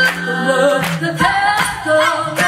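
Six-woman a cappella group singing in harmony, voices only, with a low held note under the chord that drops out a little past halfway.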